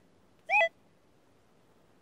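Berkut 5 metal detector giving one short beep, rising slightly in pitch, about half a second in, as the search coil passes over a buried target. The signal is one that the detectorist takes for a spent cartridge case.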